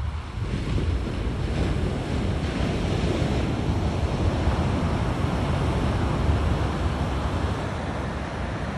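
Ocean surf breaking and washing up a sandy beach, a steady rushing that swells between about one and four seconds in. Wind buffets the phone's microphone, adding a low rumble underneath.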